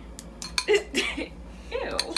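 Metal fork clinking and scraping against a ceramic bowl while beating egg and honey together, with a short bit of voice or laughter partway through.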